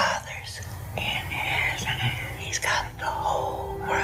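A woman whispering softly in two short breathy phrases, over a low steady hum.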